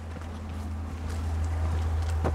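Wind rumbling steadily on the microphone outdoors, with faint sounds of people stepping along a dirt path.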